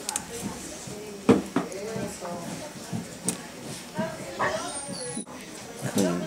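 Indistinct voices talking quietly, with a sharp click about a second in that is the loudest sound, and a few fainter clicks after it.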